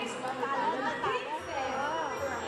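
Chatter: several voices talking at once, with no other sound standing out.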